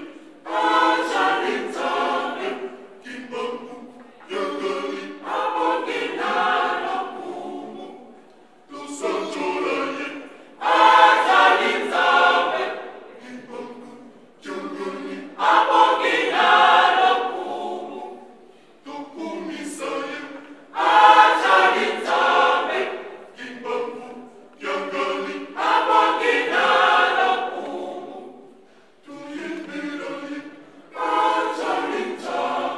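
Women's church choir singing a cappella, in sung phrases of a few seconds each with short pauses between them.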